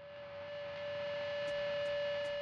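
A single steady electronic tone, held at one pitch and slowly growing louder.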